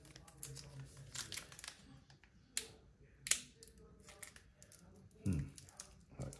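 Pokémon trading cards being handled and flicked through by hand: soft rustling and light clicks of card on card, with two sharper snaps about halfway through.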